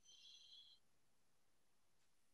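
Near silence, with a faint, brief high tone of several steady pitches in the first second.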